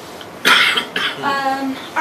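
A person coughing: a loud harsh cough about half a second in, a second shorter one, then a brief voiced sound as the throat clears.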